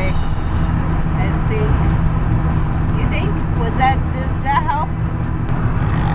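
Steady low road and engine rumble inside a moving car's cabin, with a few brief wavering vocal phrases over it around the middle.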